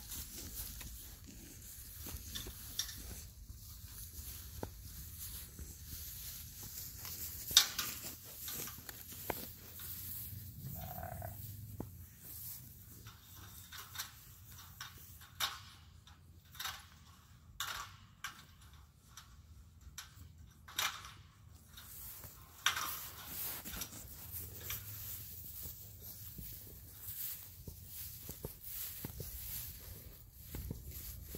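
North Country Cheviot yearling rams moving and jostling at close range in a grass pasture: scattered soft rustles and knocks, with one sharper knock about seven seconds in and a run of knocks in the second half.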